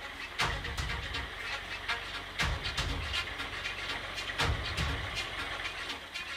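Ford tractor-loader's engine running as it drives forward with a full bucket of road base. The loader clanks and rattles, with a louder surge of knocking about every two seconds.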